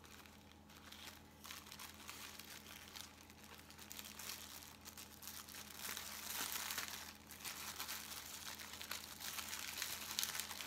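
Clear cellophane bag crinkling as it is handled and pulled open to unwrap a bath bomb, faint at first and louder from about six seconds in. A faint steady electrical hum runs underneath.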